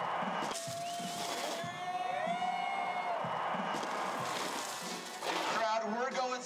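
Event ambience: a steady wash of noise with music playing, held and gliding tones in the first few seconds, and a voice coming in shortly before the end.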